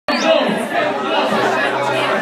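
Crowd chatter: many people talking at once in a large, crowded room, with a steady low hum underneath.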